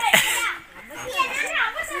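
Children's voices calling out and chattering over one another, with a short lull about half a second in.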